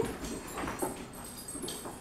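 Faint, short dog noises from two dogs wrestling, a few brief sounds with light scuffles between them.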